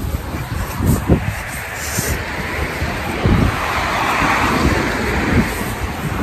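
Wind buffeting the phone's microphone, with a car passing on the street: its tyre noise swells to a peak about four seconds in, then fades.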